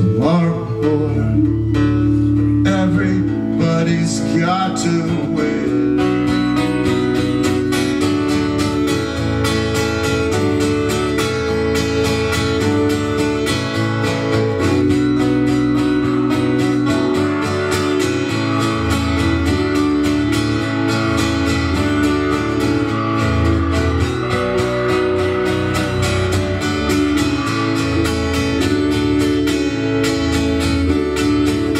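Live acoustic guitar strumming chords together with an electric keyboard holding chords, in an instrumental passage of a rock song. The strumming grows denser about six seconds in.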